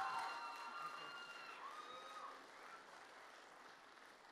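Audience applause with some cheering, fading out steadily.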